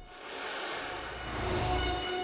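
A rushing, rumbling swell sound effect that builds up to a peak just before the end, with faint held music tones underneath.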